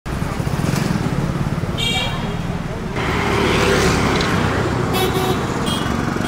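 Busy town street traffic: a steady rumble of engines with short vehicle horn toots about two seconds in and twice more near the end, and people's voices in the background.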